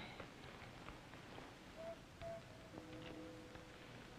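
Near silence: quiet room tone, with a soft spoken 'oh' about halfway through and faint sustained tones in the second half.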